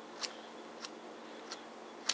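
Three light, sharp clicks about two thirds of a second apart from the small metal screw cap of a True Utility FireStash keyring lighter being handled and twisted.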